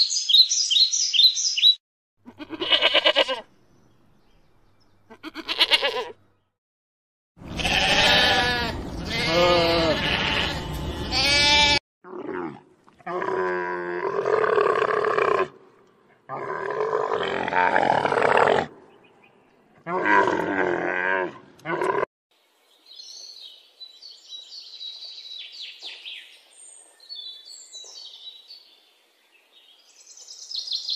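A brief run of bird chirps, then a series of about eight loud bleating calls from livestock, several with a quavering, wavering pitch and separated by short gaps. Faint high bird chirps follow near the end.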